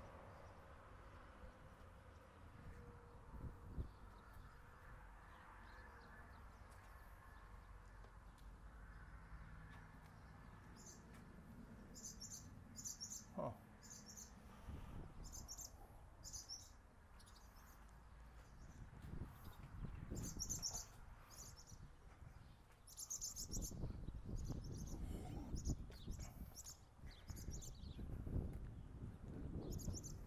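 Small birds chirping in short, quick clusters of high notes, repeated many times from about a third of the way in, over a faint low rumble.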